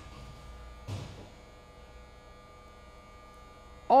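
Faint steady electrical hum and buzz, with one short soft sound about a second in.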